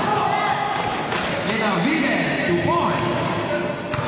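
Indoor basketball game: several voices shouting and calling over one another in a large echoing hall, with a sharp thud about a second in and another near the end.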